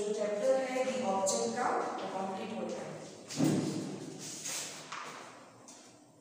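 A woman's voice speaking for the first two and a half seconds, then a single thud about three and a half seconds in.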